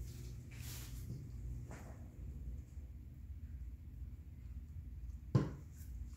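Low steady background hum with a few soft handling rustles, and one short knock near the end as a small object is set down on the painting table.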